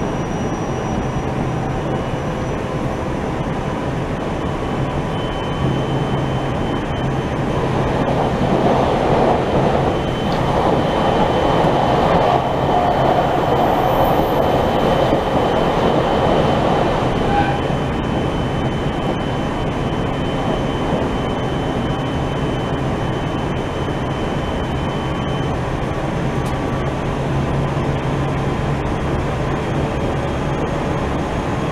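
Running noise of a JR Central Tokaido Main Line electric train heard from inside the passenger car: a steady rumble of wheels on rail with a low hum. It swells louder for several seconds in the middle, then settles back.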